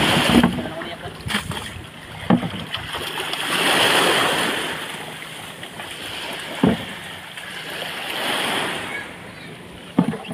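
Shallow sea water washing and splashing, swelling twice, with a few sharp knocks as a plastic tub of fish is handled.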